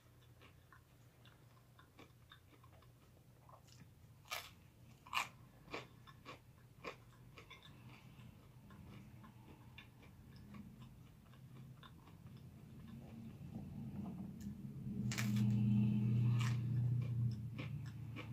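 Close-up chewing of food, with a few sharp crunches a few seconds in as crusty garlic bread is bitten. Near the end a louder low hum comes in for a couple of seconds.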